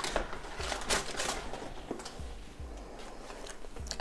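Faint rustling and a few light knocks of groceries being handled on a wooden table: a mesh produce bag of lemons and plastic food packaging.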